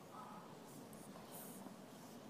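Near silence: faint room tone, with a faint high-pitched rustle around the middle.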